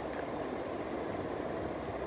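Steady background noise, a continuous even hum and hiss with no distinct events.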